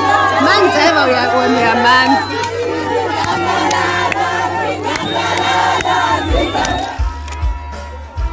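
A crowd of many voices singing, shouting and ululating together, with scattered handclaps. Near the end, the crowd gives way to music with a low steady beat.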